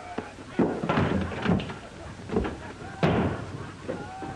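A run of thumps and knocks from a scuffle, then one loud slam about three seconds in.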